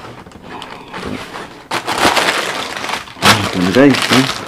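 Rustling and crinkling of a shoe box and its paper wrapping being opened and handled, with a sharp crackle a little under two seconds in.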